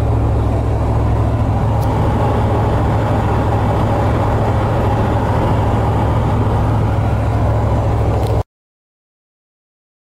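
Steady engine and road noise inside a GMC pickup's cab at highway speed while it tows a loaded trailer: a strong low drone under an even rushing haze. It cuts off abruptly to silence about eight and a half seconds in.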